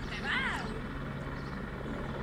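Distant helicopter hovering, a steady low drone of rotor and engine. A short high-pitched exclamation from a person rises and falls about half a second in.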